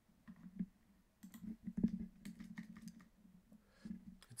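Scattered clicks and taps from a computer mouse and keyboard being worked, over a low steady hum.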